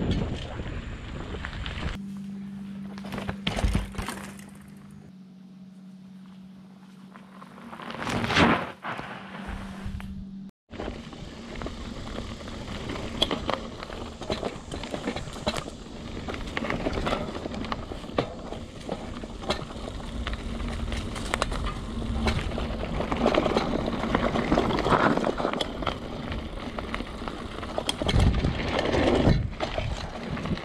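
Mountain bike ridden fast over dirt singletrack: rough, continuous rolling noise from the tyres, with frequent small rattles and knocks from the bike over the bumpy trail. A steady low hum runs through the first third, and the sound cuts out briefly about ten seconds in.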